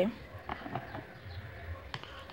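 Faint clicks and scrapes of a plastic spoon scooping hair mask out of a plastic tub and dropping it into a small plastic cup.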